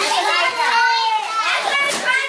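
Children shouting excitedly in high-pitched voices, with no clear words.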